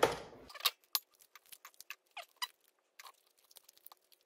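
Dried turkey tail mushrooms being pulled and broken apart by hand: a brief rustle at the start, then a run of dry crackles and small snaps with a few short squeaks.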